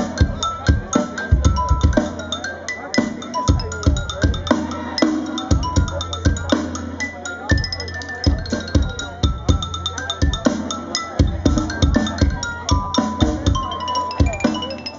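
Live band music: a quick melody of short, stepped notes struck with mallets on a xylophone-type keyboard, over steady drum hits.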